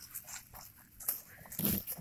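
Faint handling noise: scattered soft rustles and light taps, a little louder just before the end.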